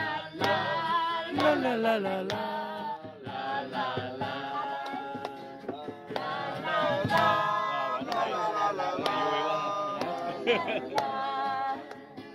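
Men and women singing a Vietnamese song together, in sung phrases with short breaks between them.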